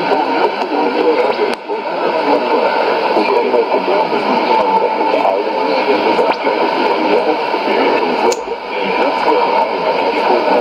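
Afrikaans speech from a shortwave AM broadcast, played through a Sony ICF-2001D receiver's speaker. The voice sounds thin and narrow under a steady hiss of static, with two brief dips, about one and a half seconds in and near the end.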